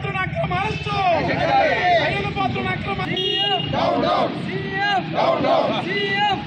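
A crowd of men shouting protest slogans together, their voices rising and falling in repeated loud cries.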